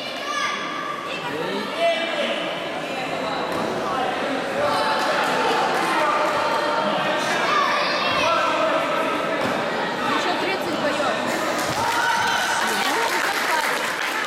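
Several voices shouting and calling out over one another in a large echoing hall, with occasional dull thuds of kicks and feet on the mats during a taekwondo sparring bout.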